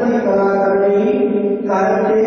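A man chanting a prayer in long held notes into a microphone, moving to a new note near the end.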